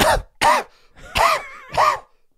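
A person's voice making four short, hacking coughing sounds about half a second apart, a mock smoker's cough after a pretend drag on a cigarette.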